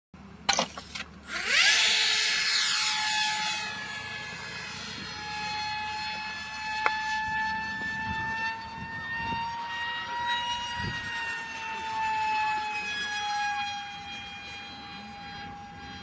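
Electric motor of a Funjet RC plane (HXT 2845 brushless, 2700 kv on a 4-cell pack, APC 5×5 prop) at full power. After a few sharp clicks in the first second, its whine comes in loud and drops steeply in pitch as the plane speeds away. It then settles into a steady high whine that drifts gently in pitch while the plane flies overhead.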